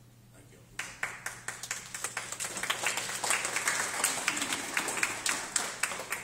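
Audience applauding. The clapping starts about a second in, builds to a dense round and begins to thin out near the end.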